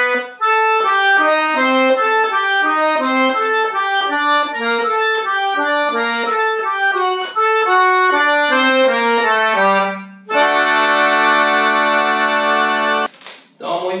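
Piano accordion playing a melody slowly, note by note, then holding a full chord for about three seconds near the end.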